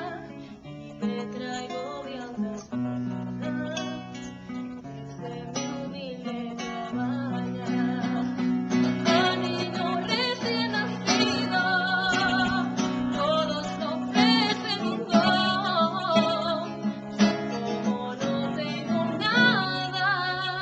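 A woman singing a Christmas carol (villancico) with vibrato, accompanied by a man playing a classical acoustic guitar. The guitar carries a steady bass line and chords, and the voice grows fuller in the second half.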